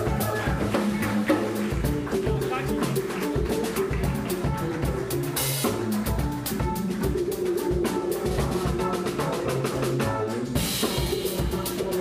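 A live funk band playing: drum kit keeping a busy beat under upright bass, electric guitar and keyboard.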